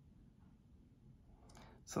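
Faint clicking from fingertips handling a tiny steel collar and a bracelet link, over quiet room tone. A breath and the start of speech come near the end.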